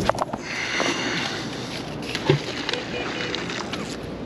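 A magnet-fishing rope hisses as it pays out on a cast, fading after about a second and a half. A few small clicks and a short knock follow.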